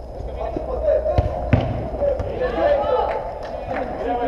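A football kicked twice in quick succession, two sharp thuds about a second in, amid players' shouts and calls.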